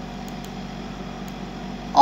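Steady low hum of room noise, with a few faint ticks.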